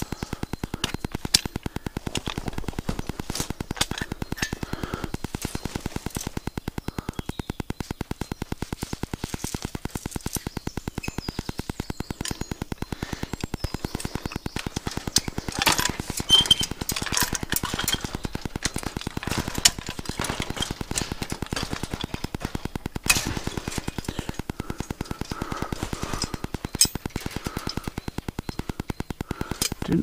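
Steel chain and fence wire clinking and knocking now and then as they are handled and hooked together. Underneath is a fast, steady mechanical pulsing.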